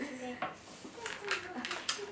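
Several quick clinks and taps of a measuring cup and utensils against a mixing bowl, bunched in the second half, while grated cheese is measured in.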